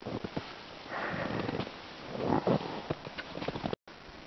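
A person walking through snow with a handheld camera: soft crunching steps and rustling, with two longer swells of noise about a second and two seconds in. The sound drops out briefly near the end.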